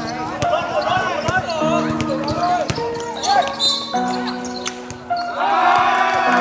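A basketball being dribbled on an outdoor hard court, a few sharp bounces, over background music with sustained chords and voices.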